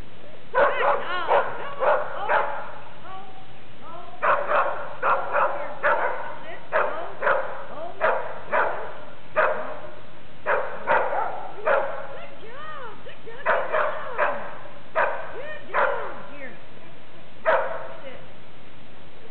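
A dog barking in short, high yips, over twenty in all, in bouts of several at a time.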